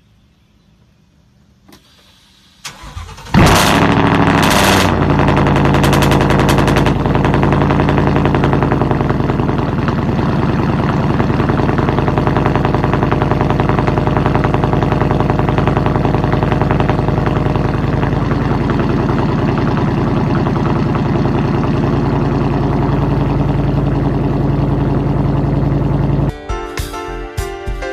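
Ford Mustang GT's V8 engine cranking and firing about three seconds in, flaring up loudly with a few sharp bursts, then settling into a steady idle.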